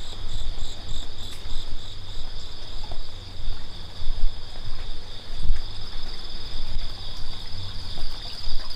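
Insects singing in two steady high tones, with a faster pulsing chirp above them that stops about two and a half seconds in. A low, uneven rumble runs underneath.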